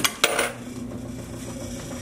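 Metal coin slide of a coin-operated fortune-teller machine being pushed in with a quarter: a few sharp metallic clacks and clinks in the first half-second. A steady low hum follows.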